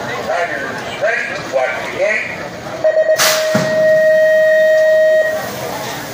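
BMX starting-gate cadence: a voice, then a few quick beeps and a long steady tone of about two seconds. As the long tone starts, the gate drops with a sudden clang and a low thud.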